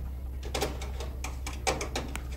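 A few scattered clicks and light knocks of hands working on wiring and parts inside an open appliance cabinet, over a steady low hum.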